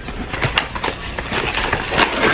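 Packaging being unwrapped by hand: an irregular run of crinkling and crackling with small clicks.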